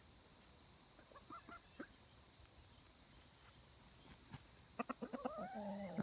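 Backyard chickens clucking softly: a few faint clucks about a second in, then a quick run of clucks and a drawn-out call near the end.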